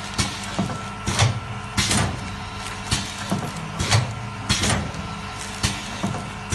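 Automatic liquid bag filling and sealing machine with a piston filler, cycling: a steady hum broken by a repeating pair of loud clacks about 0.7 s apart, roughly every 2.7 s, with lighter clicks between.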